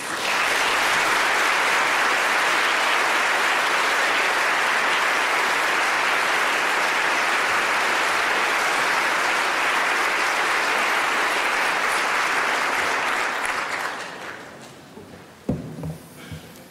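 Audience applauding steadily, then dying away over the last two seconds or so.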